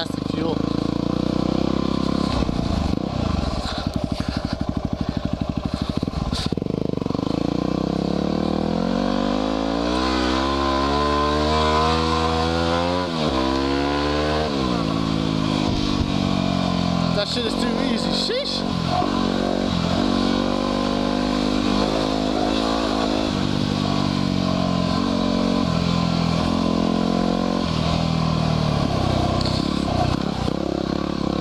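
2010 Yamaha WR250R's 250 cc single-cylinder four-stroke engine under way, revving up and down as the rider works the throttle and gears. Around the middle its pitch climbs steadily for a few seconds, then drops sharply, and it keeps rising and falling after that.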